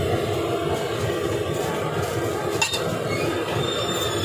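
Steady rushing noise of a busy street-food griddle station, with a metal spatula clinking and scraping on the steel flat-top, one sharp clink about two and a half seconds in.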